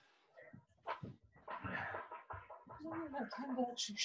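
Faint, indistinct voices in a small room, with a single knock about a second in.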